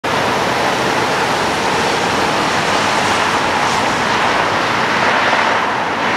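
Steady road traffic noise from cars driving through an intersection: an even, continuous hiss of tyres and engines with no single car standing out.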